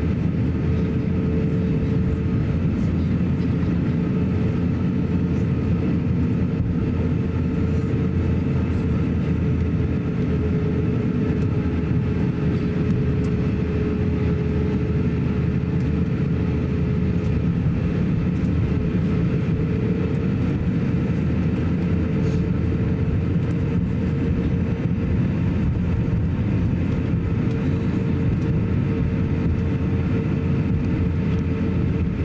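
Cabin noise of an Airbus A350-900 taxiing, heard from a window seat over the wing: a steady low rumble from the Rolls-Royce Trent XWB engines at taxi power, with a steady mid-pitched hum running through it.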